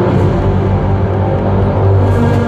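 Concert intro music played loud over an arena sound system, a dark, sustained layered sound with deep held bass notes.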